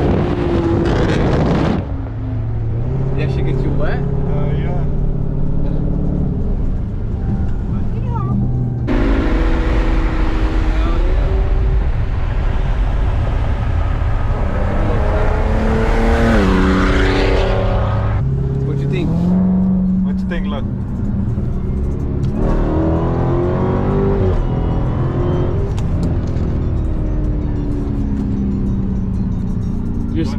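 Music with a vocal line over car engine and road noise; an engine revs up about two thirds of the way through.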